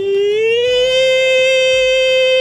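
A singing voice holds one long wordless note in a sad ballad. The note slides up slightly about half a second in and is then held steady over a low bass accompaniment.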